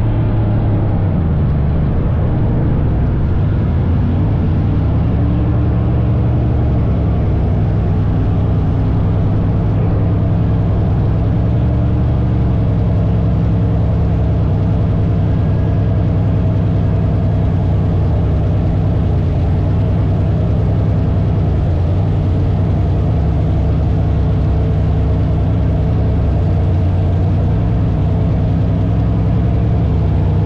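Dirt late model race car's V8 engine running loud at a nearly steady pitch, with a small shift in pitch in the first couple of seconds.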